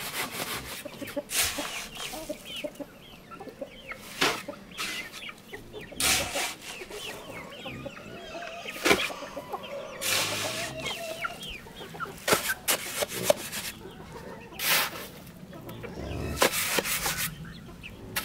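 Chickens clucking, over irregular scrapes and thuds of a shovel working wet sand-cement mortar.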